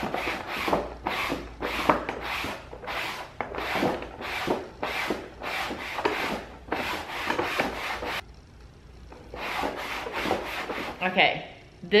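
A damp sponge wiped down a burlap-textured lampshade in repeated downward strokes, about two a second, to lift the dirt off with warm water. The strokes pause briefly about eight seconds in, then resume for a few more.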